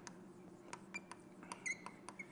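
Faint chalk-on-blackboard writing: a scattering of light sharp taps and a short high squeak near the end, over a faint steady room hum.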